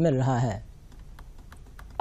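A man's narration ends about half a second in. Then comes quiet room tone with a few faint, irregular clicks.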